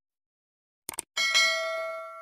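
Mouse-click sound effect, a quick double click about a second in, followed at once by a bright bell chime of several ringing tones that fades away: the notification-bell ding of a subscribe-button animation.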